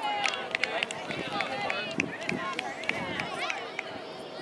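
Indistinct chatter of spectators and children around a grass sports field, with many short, sharp chirps and clicks mixed in.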